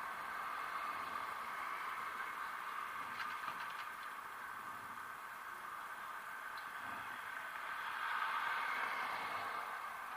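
Steady street noise of city traffic, cars passing close by in the next lane, swelling as one goes by near the end. A few faint clicks come about three seconds in.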